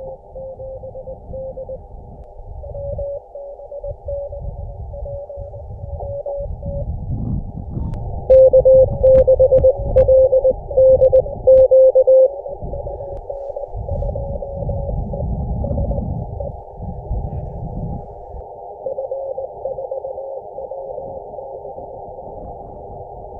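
Morse code (CW) from an amateur radio transceiver: a single beeping tone keyed in dots and dashes over band hiss heard through a narrow receive filter, as contacts are exchanged with calling stations. A louder, denser run of Morse comes in the middle, and a low rumble runs underneath throughout.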